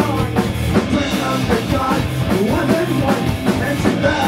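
Punk rock band playing live at full volume: electric guitars over a driving drum kit.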